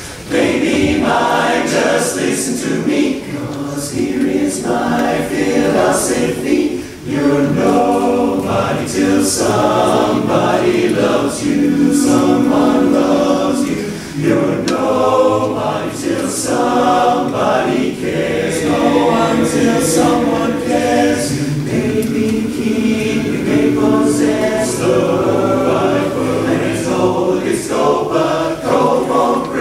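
Men's a cappella chorus singing in harmony, the song starting about half a second in.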